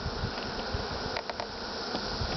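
Honeybees buzzing in a steady hum around a freshly restacked hive, with a few quick clicks just past the middle.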